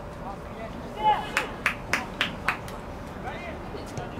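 Shouts from around a football pitch, then a short call and about six sharp hand claps in quick, even succession, roughly three a second.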